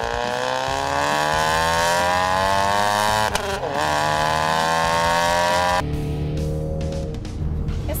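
2015 Mustang EcoBoost's turbocharged 2.3-litre four-cylinder accelerating hard through a Borla off-road downpipe and ATAK cat-back exhaust, its pitch rising steadily. There is a brief break about three seconds in, then it climbs again, and it cuts off suddenly a little before six seconds in.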